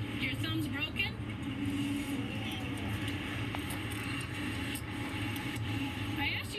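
Steady road traffic and engine hum from a busy street, with brief indistinct speech in the first second.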